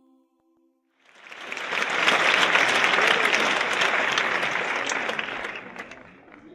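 Audience applause that starts about a second in, swells quickly, holds, then fades away near the end. A jingle's last held notes fade out before it.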